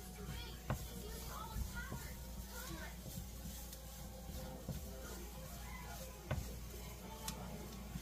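A spatula stirring onions and flour in a nonstick frying pan, with a few light knocks against the pan, under faint background voices and music.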